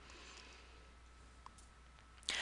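Near silence: faint room hiss and low hum, with a single faint click about one and a half seconds in.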